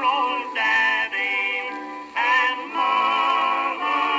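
Music from a 1922 acoustic-era recording of a male vocal quartet: a held melodic passage without clear words. The sound is thin and boxy, with nothing in the deep bass or high treble.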